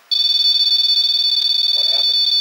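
M-Pod EMF detector sounding its alarm: a steady, high electronic tone that starts suddenly just after the start and holds unbroken, set off as its lights come on. The investigators take it for a spirit touching the device.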